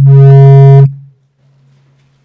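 Loud low-pitched microphone feedback howl through the hall's PA system, one steady tone that builds up to full level and cuts off abruptly under a second in, a faint trace of it lingering briefly after.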